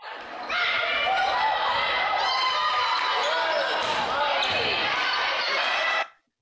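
Game sound of a volleyball rally in a gym: a crowd and players' voices with ball hits, echoing in the hall. It starts and cuts off abruptly.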